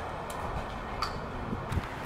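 Outdoor background noise with wind rumbling on the microphone and a few faint clicks, about three in two seconds.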